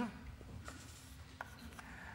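Chalk on a blackboard: a few faint, scattered taps and scratches as a diagram is drawn.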